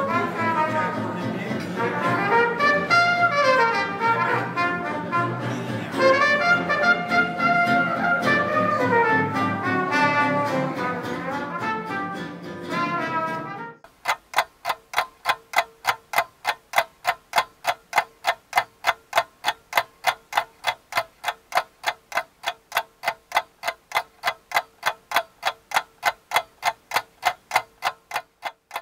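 A small live jazz band, with trumpet, trombone and saxophone, playing. About 14 seconds in the music cuts off abruptly and a ticking-clock sound effect takes over, about three or four even ticks a second over a faint steady tone.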